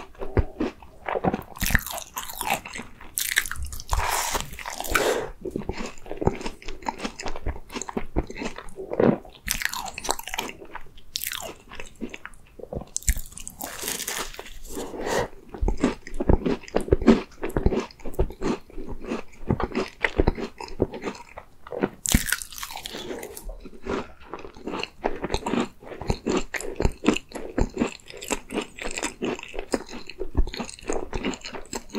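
Biting and chewing a choux cream tart: the crisp pastry shell crunching, with a few louder crunching bites among continuous chewing.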